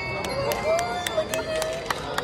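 A lull in the recital music: a voice among the audience and a scattered series of sharp clicks.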